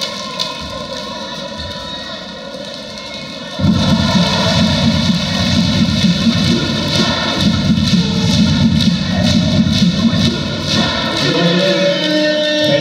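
Arena PA music playing over loud crowd noise at a basketball game; the sound jumps suddenly louder about three and a half seconds in and stays loud.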